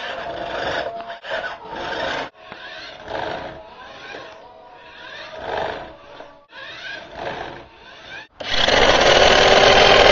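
Electric motor of a toy RC car revving in repeated bursts, each with a rising whine, as the wheels spin for a burnout on a smooth floor. About eight seconds in, a loud rushing noise takes over.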